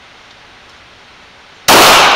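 A steady hiss, then near the end a single very loud, sharp shot from a Glock 17 9mm pistol, its report ringing on in the echo of an indoor shooting range.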